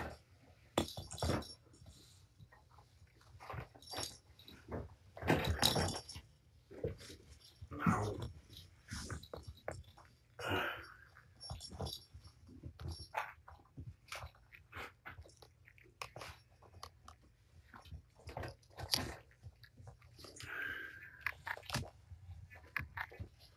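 Kittens scrabbling and tussling in a corrugated-cardboard scratcher bowl: irregular scratches, rustles and soft knocks, with two brief higher-pitched sounds, one about halfway and one near the end.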